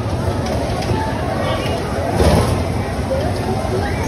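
Bumper cars running across the rink floor with a steady low rumble, riders' voices and chatter over it. A louder thump comes about halfway through.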